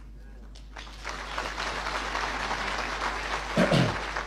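Audience applauding, starting about a second in and carrying on to the end, with a brief voice heard over it near the end.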